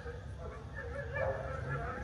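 A dog making faint, high, wavering whines.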